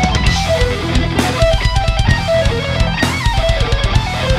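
Playback of a heavy rock mix: a lead electric guitar plays a melodic line of stepping notes over drums and bass guitar.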